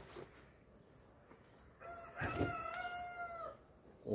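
A rooster crowing once, about two seconds in: a single drawn-out crow lasting under two seconds.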